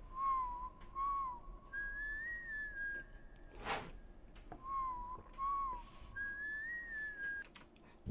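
Recorded whistling from a pop song's intro: a short whistled tune, two quick low notes and then a longer, higher wavering note. It is played twice, with a brief whoosh between the two phrases.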